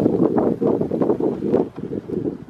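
Wind buffeting the microphone: a loud, uneven rumble that rises and falls in gusts.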